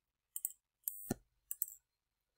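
Computer mouse clicks: a few quiet, short clicks, some in quick pairs, with a duller knock about a second in.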